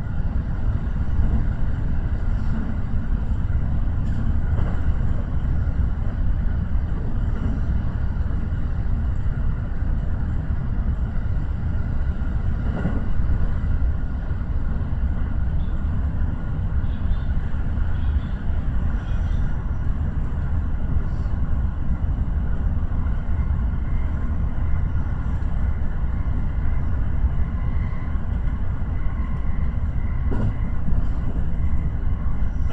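Running noise of a JR Kyoto Line local electric train at speed, heard from inside behind the driver's cab: a steady low rumble of wheels on rail with a faint whine above it.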